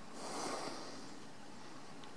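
A short, noisy breath out close to the microphone, lasting under a second near the start.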